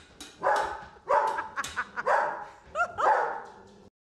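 Small dog barking in alarm at a tea kettle she is afraid of, a quick, uneven string of about six barks.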